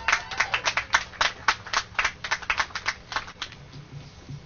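Audience applauding, the clapping thinning out and dying away about three and a half seconds in.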